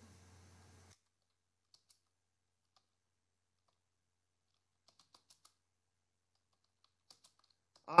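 Faint, sparse computer-keyboard keystrokes, a few scattered clicks with a small cluster about five seconds in, over near silence.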